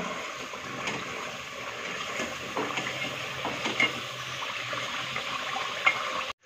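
Spiced onion-tomato masala paste sizzling and bubbling steadily in hot oil in an aluminium pot, with scattered light clicks of a steel ladle stirring it.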